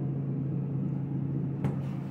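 Steady hum inside a thyssenkrupp traction elevator car, with one sharp click near the end.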